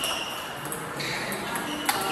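Table tennis ball clicking off paddles and the table during a forehand drill against backspin feeds: several sharp clicks, the loudest near the end.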